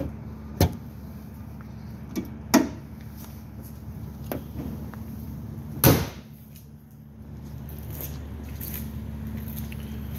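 The hood of a 2022 Subaru Ascent being closed: a couple of sharp knocks, then the hood slamming shut about six seconds in, the loudest sound. A steady low hum runs underneath.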